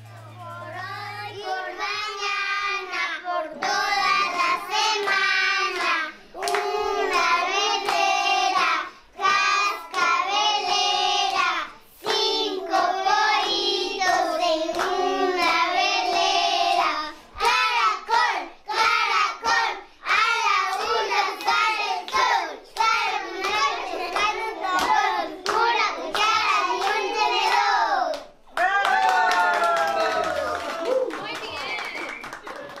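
Children singing together in high voices, phrase after phrase, with hand claps.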